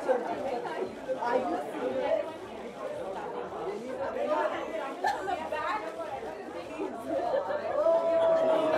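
Indistinct chatter of many people talking at once in a crowded hall, with no single voice standing out.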